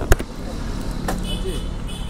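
Motorcycle engine running at idle with a low steady rumble, and a couple of light clicks.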